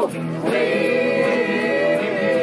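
A group of amateur voices singing together in chorus, holding one long note for most of it.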